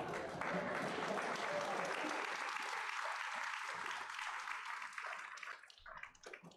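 Audience applauding, with laughter at the start; the applause dies away near the end.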